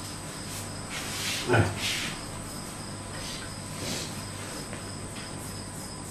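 Marker pen strokes on a whiteboard: faint scratchy writing sounds with a short knock about a second and a half in, over a faint steady high-pitched whine.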